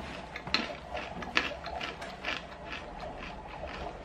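Chewing crunchy batter-coated peanuts, with irregular crisp crunches every half second or so.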